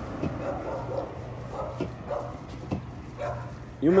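A puppy whining and yipping faintly in short calls, several times over a few seconds, against a steady low hum.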